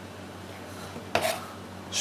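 A brief clatter of a metal kitchen knife against a dish, about a second in, over a low steady background hum.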